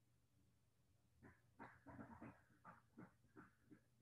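A faint run of about eight short voice-like sounds, beginning about a second in and stopping just before the end.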